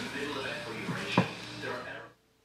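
A male voice speaking briefly, with one sharp thump a little past halfway.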